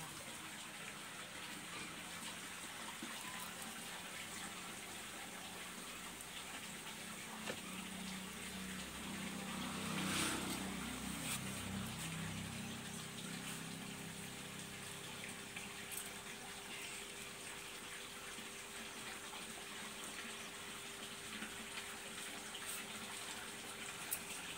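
Faint, steady hiss of a wood fire burning in a clay stove under cooking pots, with a few sharp crackles. A low rumble swells and fades about eight to thirteen seconds in.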